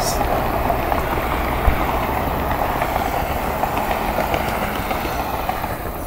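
A steady rushing, rumbling background noise with no clear rhythm.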